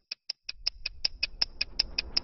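Stopwatch ticking sound effect: a steady run of sharp, high-pitched ticks at about five a second.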